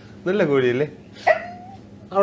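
A man's voice: a drawn-out syllable that rises and falls in pitch, then, a little past a second in, a short higher held note.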